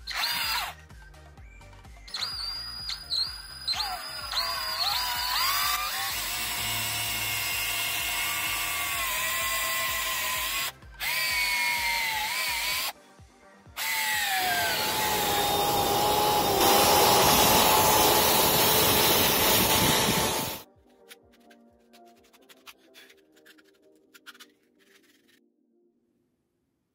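Cordless drill boring a hole through a soft wooden crossbow stock. The motor whine starts in a few short trigger blips, then runs long with its pitch dipping and recovering as the bit bogs in the wood. It pauses twice and ends in a louder stretch of cutting that stops suddenly about twenty seconds in, followed by a few faint clicks.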